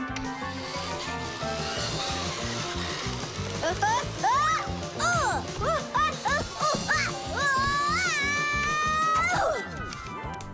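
Cartoon background music with a small character's high-pitched wordless cries. From about four seconds in, the cries rise and fall a few times a second, then one long held cry breaks off shortly before the end.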